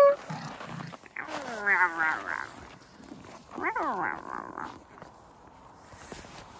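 Pomeranian puppy vocalising in play: a drawn-out whine that falls in pitch about a second in, then a shorter wavering call near four seconds.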